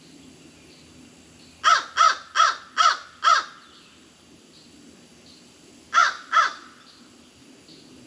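A crow cawing: five caws in quick succession, then two more about two and a half seconds later.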